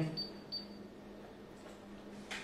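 Quiet room tone with a steady low hum and a single light click about half a second in, typical of an oscilloscope front-panel button being pressed.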